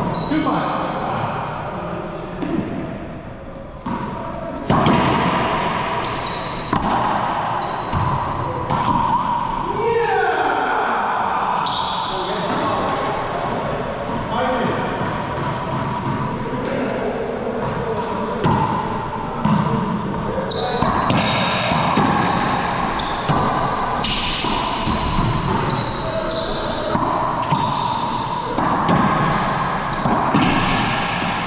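Racquetball ball struck by racquets and bouncing off the walls and hardwood floor of an enclosed court: a string of sharp, echoing hits.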